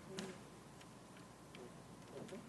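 Near-silent room tone with a few faint, sharp clicks and taps, the loudest just after the start, from small handling at a desk near an open microphone.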